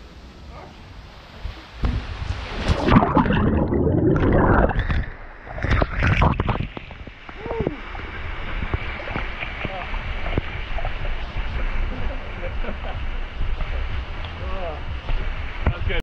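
Water rushing as a rider drops out of a waterslide bowl into the splash pool: a loud splashing surge about two seconds in, a second one near six seconds, then the steady pour of water from the slide's outlet splashing into the pool.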